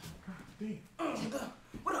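A man's short, whiny vocal cries, like whimpers or strained groans: a few brief ones, then a longer one about a second in.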